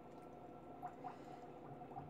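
Quiet room tone with a faint steady hum and a small soft click a little under a second in.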